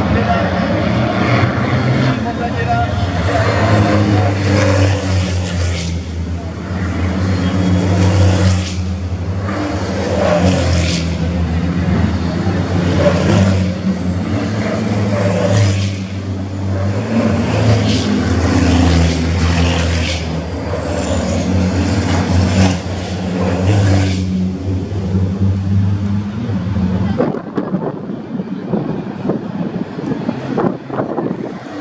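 Several racing trucks' diesel engines driving past in a pack, their engine notes stepping up and down as they accelerate and shift, overlapping from truck to truck. The engine sound drops away about 27 seconds in as the last trucks pass.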